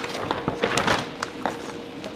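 Self-adhesive vinyl wrap film and its paper backing crackling and rustling as the sheet is lifted by hand off a shelf, with scattered small clicks.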